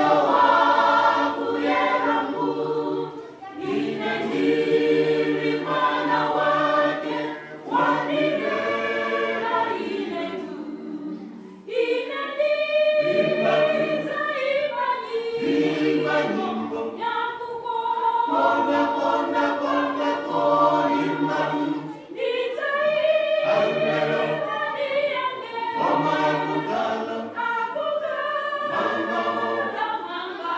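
Small vocal groups singing a hymn a cappella in several parts, first male voices, then men and women together after a short break about twelve seconds in.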